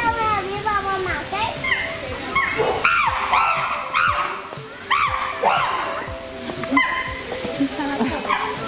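Chimpanzees screaming: a run of high shrieks that rise and fall in pitch, densest and loudest in the middle seconds. It is the noise of a tense squabble in which teeth are being bared.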